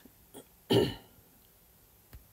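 A woman clearing her throat once, briefly, with a faint click just before it.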